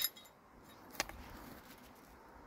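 Old rusty square-cut iron nails clinking against each other in a gloved hand: a short metallic clink with a brief high ring at the start, then a second sharp tick about a second later.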